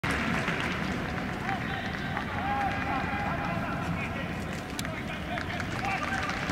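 Football stadium ambience during open play: a steady hum of spectators with scattered indistinct shouts and calls, and a few sharp clicks.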